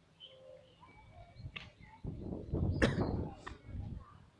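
A rushing whoosh of noise with a few sharp clicks, loudest in the second half, over faint bird chirps.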